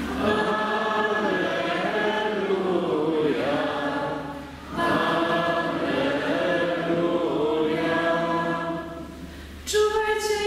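A group of voices singing a sung response together in two phrases, with a short break about halfway through. A single voice starts singing again near the end.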